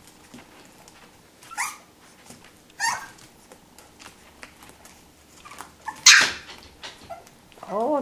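Five-week-old Cavapoo puppy giving three short, high yips: one about a second and a half in, one near three seconds, and a louder one about six seconds in.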